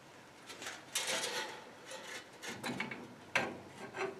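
Artificial gas logs being set back onto the metal grate of a gas fireplace: light knocks and scraping, with a clunk about a second in and a sharper knock a little over three seconds in.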